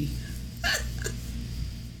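A man's brief chuckle: two short breathy catches, about two-thirds of a second and one second in, over a low steady hum.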